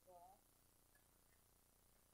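Near silence: faint room tone, with a brief, faint voice right at the start.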